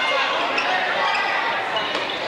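Basketball game in a gym: the ball bouncing on the hardwood floor amid players' and spectators' voices.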